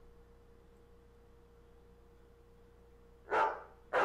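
Near silence with a faint steady hum, then a dog barks near the end.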